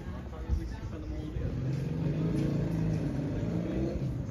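A motor vehicle's engine running at a steady pitch, growing louder from about halfway through as it comes close. People's voices are mixed in, with a single knock near the start.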